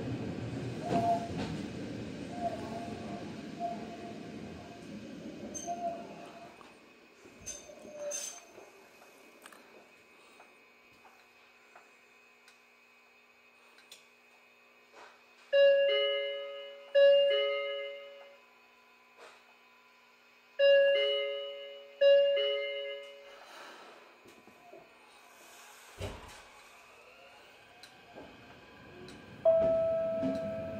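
A Japanese commuter train runs down to a stop with faint squealing, then stands quietly. Its two-tone door chime then sounds four times, as two pairs of falling ding-dongs about a second apart, the loudest sounds here. A single low thud follows, and near the end a steady tone begins as the train prepares to move off.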